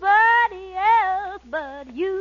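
A woman singing a slow ballad alone, the band almost silent behind her. Her voice slides up and down through three or four short held phrases.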